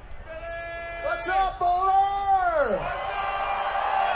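One long held yell from a single voice that rises, holds its pitch for about two seconds and then drops steeply away, followed by a crowd cheering and whooping.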